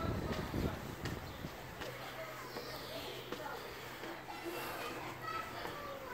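Footsteps on a steel spiral staircase with wind on the microphone, a few footfalls in the first second, then fainter steps under faint distant voices.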